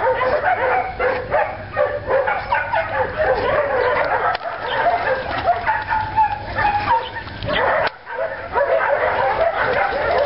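Several dogs barking and yipping in a dense, continuous chorus of short, high calls that overlap one another, with a brief lull about eight seconds in.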